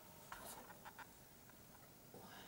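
Near silence: room tone with a few faint short clicks and a brief soft rustle in the first second.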